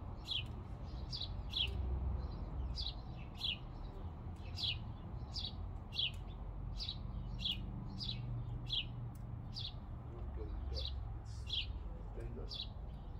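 A bird calling over and over with short chirps that fall in pitch, a little more than one a second and often in pairs, over a low steady background rumble.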